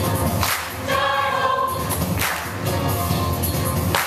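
Mixed choir singing with accompaniment, held sung notes broken by strong accents that come roughly every second and a half to two seconds.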